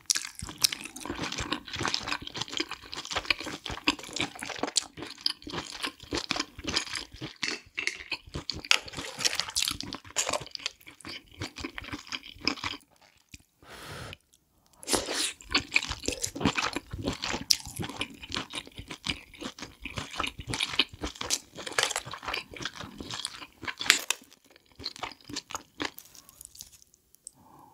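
Close-up chewing of spicy seafood: a dense run of wet clicks and crunches, breaking off for about two seconds around the middle before the chewing starts again.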